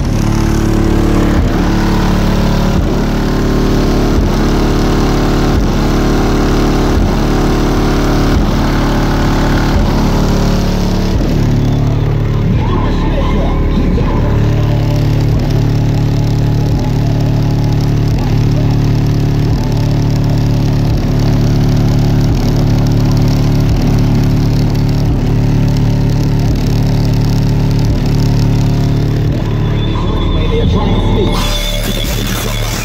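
Bass-heavy rap music played loud through two 12-inch HDC3 subwoofers in a car's trunk sub box, heard from outside the car. Deep bass notes land about every second and a half, each sliding down in pitch.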